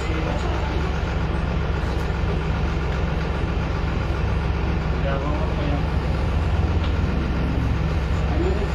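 City bus engine running, heard from inside the passenger cabin: a steady low drone.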